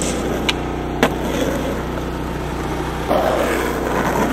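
Skateboard on concrete: sharp clacks of the board about half a second and a second in, with wheels rolling and a rougher scraping stretch from about three seconds in.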